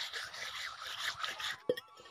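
A hand scrubbing water over the rough surface of a flat stone grinding slab (sil), washing it clean: a wet scrubbing sound that stops about one and a half seconds in, followed by a single short knock.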